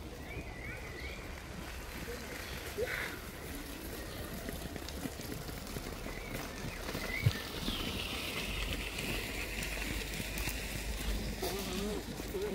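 Faint, indistinct voices in the background, with a single sharp click about seven seconds in.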